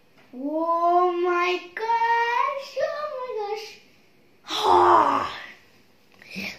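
A child's voice singing long, wordless held notes that slide in pitch, then a short, loud, breathy exclamation about four and a half seconds in.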